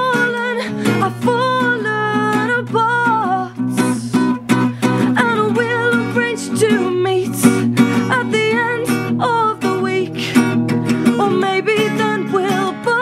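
A woman singing a melody over a strummed acoustic guitar in a live solo performance.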